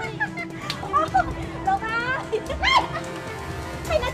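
Voices crying out in short, pitched exclamations over background music with steady held notes; the loudest is a sharp rising cry a little before the end.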